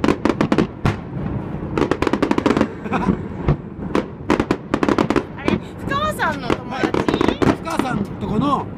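A fireworks display: aerial shells bursting in quick volleys of bangs and crackles, one after another.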